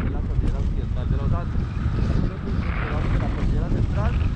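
Airflow of a paraglider in flight buffeting a selfie-stick camera's microphone: a steady, dense low rush, with faint talk under it.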